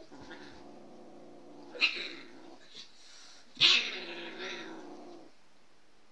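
A cat growling in one long, wavering low yowl, cut by two sharp, loud hisses, the first about two seconds in and the louder one about three and a half seconds in. This is a defensive growl at a dog pawing at it; the growl stops a little after five seconds.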